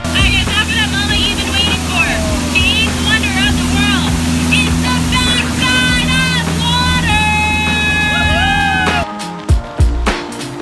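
A jungle-ride sound effect: a boat motor drones steadily under a chorus of chirping, warbling bird calls, with a long held call and a sliding note near the end. It cuts off about nine seconds in.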